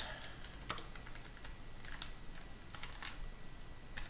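Typing on a computer keyboard: a run of faint, irregularly spaced keystrokes.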